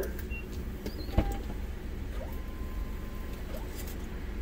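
Low, steady hum of an idling car heard from inside its cabin, with a single thump about a second in.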